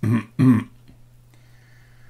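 A man clearing his throat: two short bursts in quick succession near the start.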